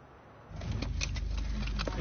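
Near silence, then about half a second in a low steady rumble sets in with light clicks and clinks: field sound from under earthquake rubble, recorded on a handheld camera.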